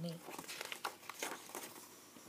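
A large paper page of a hardcover picture book being turned by hand: a short rustle with a few crisp flicks, over by about a second and a half in.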